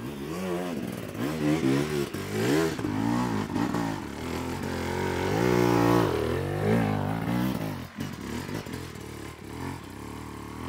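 Enduro dirt bike engine revving up and down over and over as the throttle is worked on a steep climb, loudest about halfway through.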